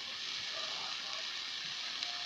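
Chunks of beef and lamb frying in a large kazan: a steady sizzle.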